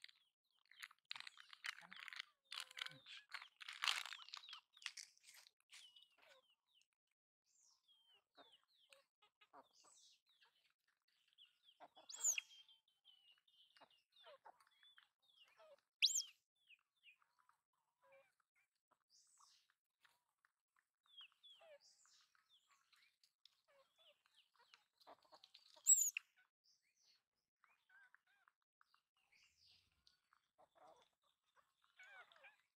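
Crinkling and rustling of a plastic snack packet in the first few seconds, then a mostly quiet yard with scattered faint clucks from chickens and three short, sharp high chirps, about 12, 16 and 26 seconds in, that are the loudest sounds.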